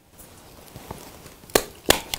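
Two sharp knocks near the end, about a third of a second apart, over a faint hiss. They come from hard objects being handled while the card shims are set into the rubber mould.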